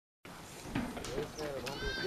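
A man's voice begins speaking about a second in, over faint outdoor background. A brief high-pitched call sounds near the end.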